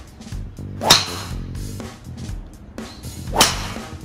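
Two driver swings about two and a half seconds apart, each a short rising club swish ending in the crack of the clubhead striking the teed ball, over background music.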